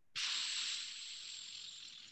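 A hiss of microphone noise on a call participant's audio line. It cuts in suddenly out of dead silence and fades slowly, with a faint thin high whine running through it.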